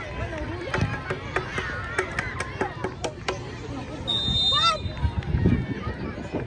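Voices of players and spectators calling out around a youth football match, with scattered sharp knocks and a short high whistle tone about four seconds in.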